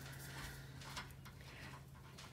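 Faint, nearly quiet sound: a steady low hum with a few soft metallic clicks as the nut is turned off a trailer wheel spindle by hand.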